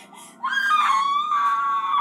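A woman's long, high-pitched scream of pain, starting about half a second in. Its pitch dips at first and then holds steady until the end.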